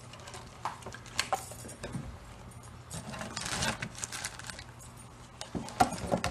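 Someone rummaging through small workshop items to find a Sharpie marker: scattered light clicks and clinks, with a denser rustling stretch in the middle, over a faint steady low hum.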